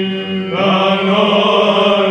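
Byzantine Orthodox chant of the apolytikia (dismissal hymns) sung by Athonite monks. A steady held drone (ison) sounds throughout, and the voices carrying the melody come in about half a second in.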